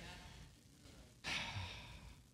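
Quiet room tone, then a man's single short sigh, a breath let out, a little past halfway through.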